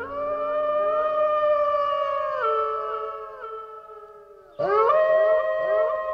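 A pack of wolves howling in chorus: several long howls rise and overlap, step down in pitch about two and a half seconds in and fade away. A new group of overlapping howls starts suddenly about four and a half seconds in.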